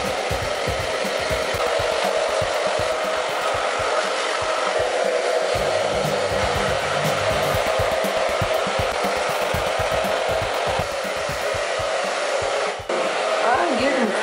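Handheld hair dryer running steadily, blowing a wet Yorkshire terrier's coat dry. It dips briefly near the end.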